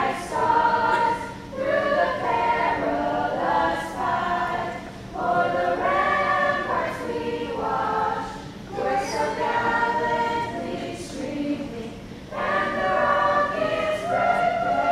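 A group of voices singing the national anthem, in long sung phrases with brief dips between them.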